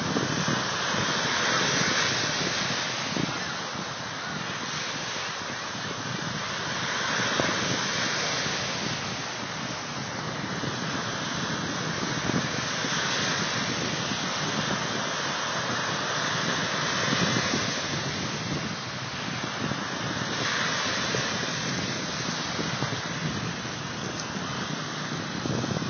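Waves washing onto a beach, the surf swelling and easing every few seconds, with wind buffeting the microphone.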